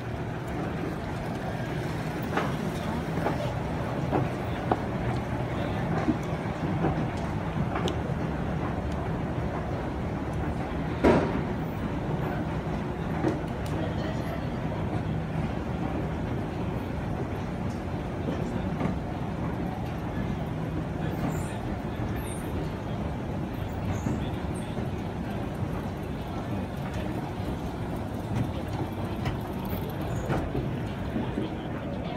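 Fujitec escalator running with a steady low hum that fades out about twenty seconds in. A single sharp knock about eleven seconds in is the loudest sound.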